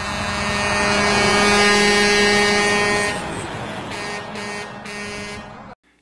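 Semi truck passing on a highway, its horn sounding a long steady blast for about three seconds over the rush of road and engine noise, then fading away.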